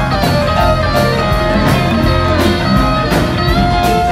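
Live rock band playing an instrumental passage: electric guitar lead with bending, sliding notes over drums and cymbals, bass and keyboards.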